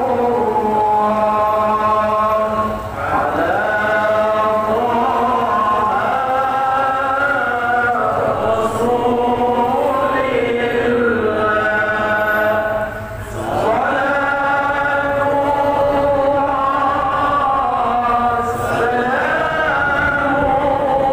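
Islamic devotional sholawat chanting: long, slow sung phrases with held notes that glide and waver, broken by two short pauses, about three seconds in and just after thirteen seconds.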